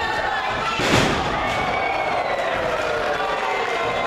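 A wrestler slammed onto the wrestling ring mat: one heavy thud about a second in, with the crowd shouting around it.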